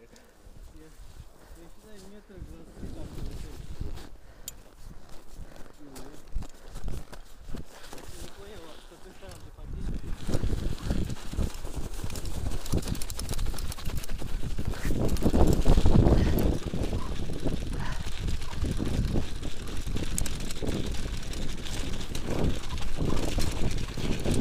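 Mountain bike ridden over packed snow: tyres crunching with knocks and rattles from the bike and wind rushing on the camera microphone, much louder from about ten seconds in.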